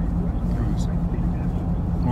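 Jeep running down the road, heard from inside the cabin: a steady low engine hum over road noise.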